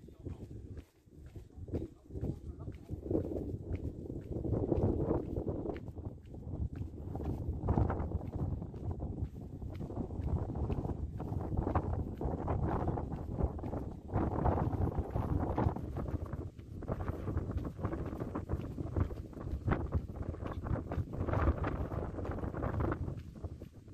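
Footsteps of people walking on a concrete path: a steady run of scuffing footfalls that goes on throughout.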